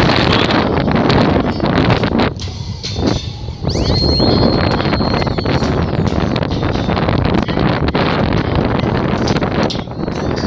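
Wind buffeting a phone's microphone on a moving bicycle, a loud rushing noise with frequent small clicks and knocks from the bike on a rough road. A high whistling tone sounds for about a second and a half near the middle.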